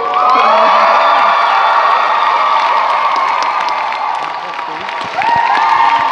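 Audience cheering and screaming at the end of a dance routine, many high voices held and overlapping. The cheering eases a little, then swells again about five seconds in.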